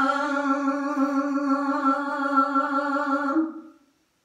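A man singing one long held note of a Punjabi kalam, the pitch wavering slightly. The note steps up a little and breaks off about three and a half seconds in, fading quickly to silence.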